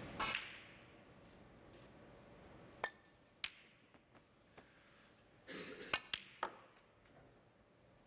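Snooker balls clicking: the cue tip strikes the cue ball and the balls knock together in sharp single clicks a second or so apart, with a quick cluster of clicks near the end as a red is potted.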